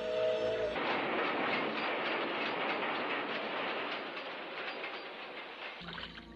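A train going by in an animated film's sound track: a chord-like whistle ends under a second in, then the train's loud rushing clatter slowly fades away.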